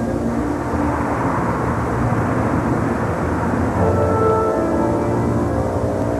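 Steady street-traffic rumble, with sustained music tones coming in about two-thirds of the way through.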